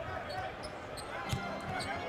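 A basketball being dribbled on a hardwood court, heard through the game's TV broadcast audio, with a couple of heavier thumps in the second half. A broadcast commentator's voice runs faintly underneath.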